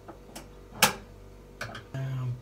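A few sharp clicks from hands working on a kitchen appliance under repair: a faint one early and a loud one a little under a second in.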